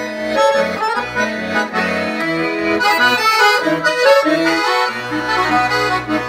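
Piano accordion played solo: a melody of quick notes on the right-hand keyboard over bass notes and chords from the left-hand buttons.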